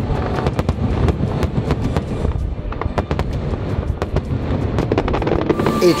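Aerial fireworks bursting in quick succession: a dense run of overlapping bangs and crackles.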